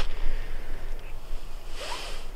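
Wind buffeting the microphone: a steady low rumble with an even hiss over it.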